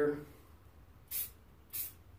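Aerosol spray paint can giving two short spurts of gray paint, about half a second apart.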